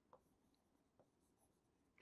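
Near silence, with two faint taps of a stylus on a writing screen, one near the start and one about a second in.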